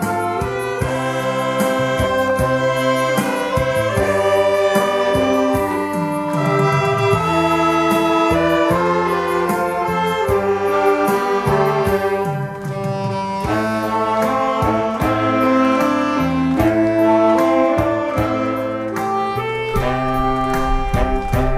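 Saxophone ensemble of soprano, alto, tenor and baritone saxophones playing a melody in harmony over a steady beat.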